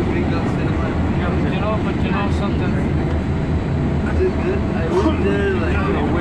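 MBTA Green Line light-rail car running: a steady low rumble of the train in motion, with passengers chattering over it.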